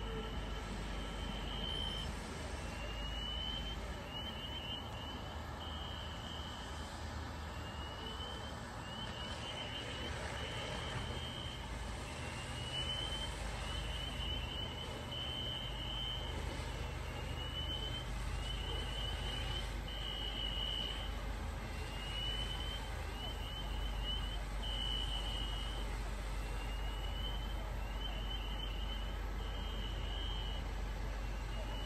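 Fire apparatus engines running steadily in a low, continuous rumble at a fire scene. Over it, a high chirping pattern repeats about every three and a half seconds: a rising sweep, a quick run of short chirps, then a held tone.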